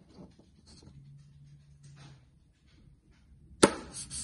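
Small wooden-faced fridge magnet, dusted with powder, handled against a stainless steel refrigerator door: faint rustles and ticks, then a single sharp click about three and a half seconds in as the magnet snaps onto the steel.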